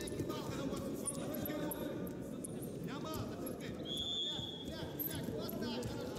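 Several voices of coaches and spectators calling out and talking over one another, echoing in a large sports hall. Short knocks and squeaks come from the wrestlers on the mat, with a short high tone about four seconds in.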